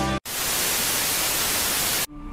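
Music cuts off abruptly a fraction of a second in, and after a split-second gap a steady burst of hissing static, like white noise, takes over and stops just as abruptly at the end.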